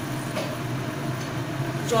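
Gas stove burner turned up to full flame, running with a steady low hum under the kadai, while the tomato-onion masala fries quietly in its oil.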